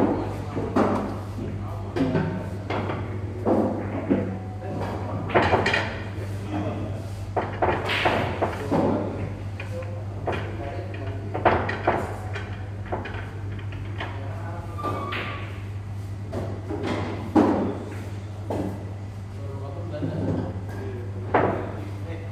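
Pool balls knocking together in sharp, scattered clacks as they are gathered and racked on the table, over indistinct talk and a steady low hum.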